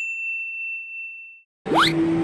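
A single bright bell-like ding sound effect rings out and fades away over about a second and a half. Near the end a quick rising sweep cuts back into busy station crowd noise.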